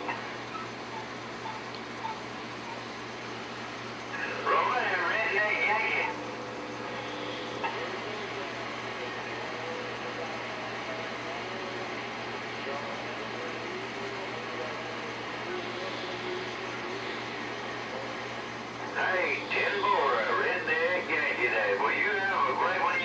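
Galaxy Saturn base radio's speaker giving a steady hiss of receiver static, broken by two stretches of voices coming in over the air: briefly about four seconds in, and again from about nineteen seconds on.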